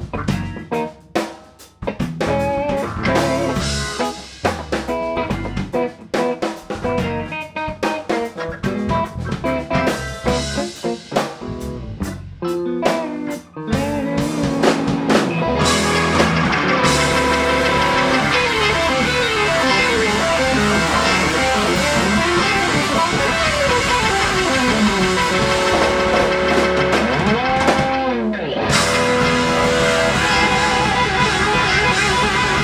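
Live rock band playing electric guitar, Hammond organ, bass and drum kit. For the first half the drums play choppy, stop-start hits with short gaps. About halfway in the whole band comes in and plays on continuously, with lead lines that slide and bend in pitch.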